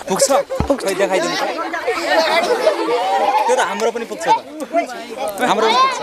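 A crowd of children chattering, many voices talking over one another, busiest through the middle.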